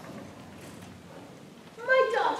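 Quiet hall noise, then near the end a young voice starts a high, drawn-out vocal sound that is held and then bends in pitch.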